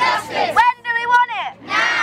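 Call-and-response protest chant: a girl's voice through a megaphone calls out a line and a group of children shout it back together. The group's shout ends just after the start, the megaphone call follows, and the group answers again from about one and a half seconds in.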